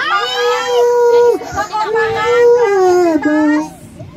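A child singing long held notes, the last ones stepping down in pitch, with other voices faintly behind.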